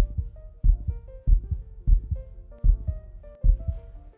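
Heartbeat sound effect: low double thumps, about six beats at an even pace, over soft background music.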